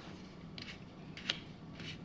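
About three faint, short clicks from the length-of-pull adjustment of a Magpul PRS Gen 3 rifle stock being pushed in through its tight detents; the middle click is the loudest.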